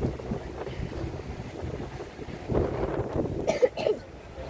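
Wind buffeting the microphone over the steady low rumble of a moving open-top tour bus, heard from its upper deck; the noise swells louder over the second half.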